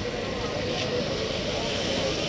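Diesel engine of a JCB mobile crane running steadily, with crowd voices mixed in.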